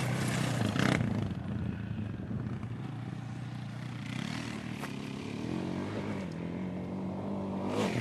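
ATV engine running at low revs, with a short knock about a second in; over the last few seconds its pitch climbs as it speeds up.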